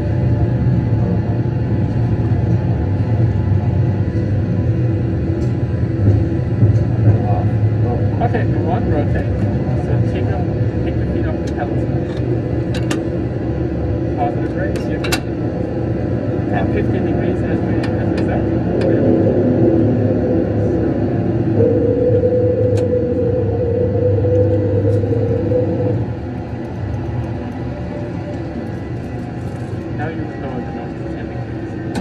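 Steady low engine and rolling rumble of a Boeing 737 flight simulator's sound system during taxi, with scattered sharp clicks in the middle. A steady higher tone sounds for a few seconds near the end, then the rumble drops in level.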